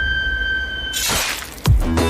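Horror soundtrack effects: a held high eerie tone over a low rumble breaks off about halfway through, followed by a rushing burst of noise and then a loud musical hit near the end.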